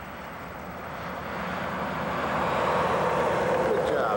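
A pickup truck towing a boat trailer drives slowly up close. Its engine and tyre noise grow steadily louder over the first three seconds and then hold.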